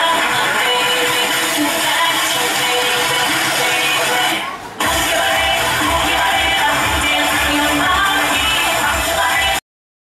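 Loud recorded dance music played over the stage speakers. It drops out briefly about halfway, then comes back with a heavy, regular beat, and it cuts off suddenly just before the end.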